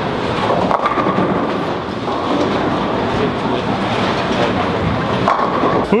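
Steady rumble of a busy bowling centre: bowling balls rolling down the wooden lanes and crashing into pins across many lanes.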